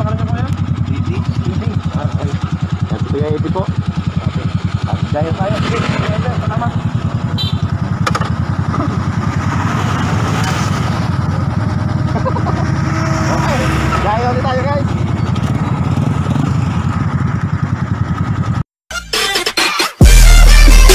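Motorcycle engine idling steadily with a fast, even pulse, and voices talking over it at times; it cuts off suddenly near the end.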